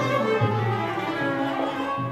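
Turkish art music ensemble playing an instrumental passage between the sung phrases: violin to the fore, with plucked strings and a low bass underneath.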